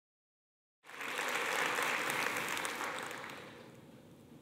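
Audience applauding, cutting in suddenly about a second in and dying away over the next few seconds.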